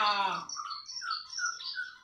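White-rumped shama (murai batu) singing a run of short, clear whistled notes, in the rivalry singing of caged males set near each other. A loud, drawn-out falling call fades out about half a second in, just before the whistles.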